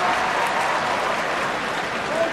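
Basketball arena crowd applauding, a steady even wash of clapping.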